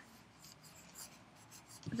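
Faint scratching of a pencil drawing short marks on paper held on a clipboard.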